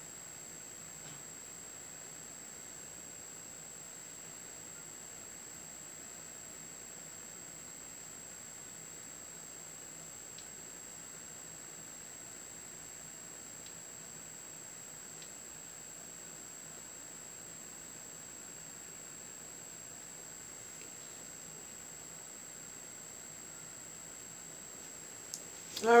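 Quiet room tone: a steady low hiss with a thin, high-pitched steady whine and a couple of faint ticks. A woman's voice starts right at the end.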